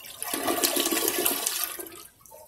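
Toilet being flushed with its water supply shut off, to empty the tank: water rushes and swirls down the bowl, starting about a quarter second in and fading near the end.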